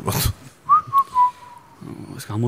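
A person whistling a short phrase of three notes, each a little lower than the last, about a second in and lasting under a second.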